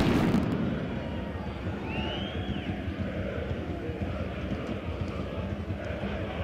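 Football stadium crowd ambience: a steady murmur from a sparse crowd. It opens with a loud burst that fades over the first second.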